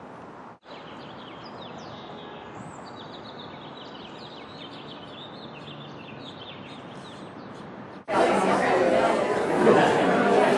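Outdoor ambience with small birds chirping over a steady background hum. About eight seconds in it cuts to a seated audience chattering in a large room, much louder.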